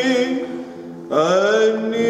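Byzantine chant, a single voice holding long notes. The first note dies away about half a second in, and just after a second a new note rises into a long, steady held tone.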